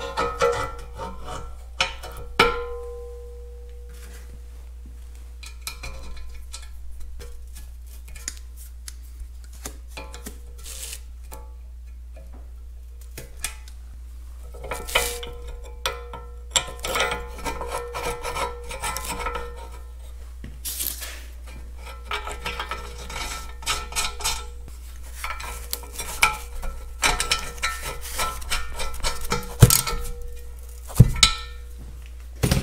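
Steel tractor control-lever parts being handled and fitted by hand: scattered clinks, taps and metal rubbing, with one sharp clink about two seconds in that rings briefly. The clatter grows busier in the second half, and a socket ratchet clicks rapidly near the end as a mounting bolt is turned.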